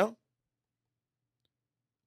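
A man's speaking voice trails off right at the start, followed by near silence: a gated, dead-quiet pause between sentences.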